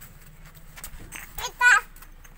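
A toddler's short, high-pitched, wavering cry or squeal about one and a half seconds in, loud against a quiet background.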